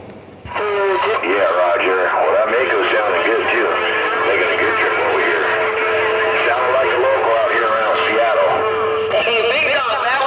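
A distant station's voice coming in over a CB radio's speaker, thin and cut off in the treble and too rough to make out. A steady tone runs under the voice through the middle few seconds. The signal comes in about half a second in.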